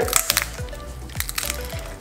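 Spiny lobster tail shell cracking as it is pried apart by hand down the middle: a cluster of sharp cracks at the start and a few more about a second in, over background music.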